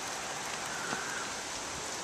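Steady, even hiss of outdoor background noise, with a faint click about a second in.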